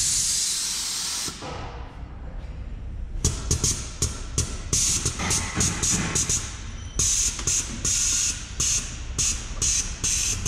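Air suspension on a lowered Volkswagen New Beetle venting air to let the car down: a steady hiss for about a second, then, after a short lull, a long run of quick, short hisses.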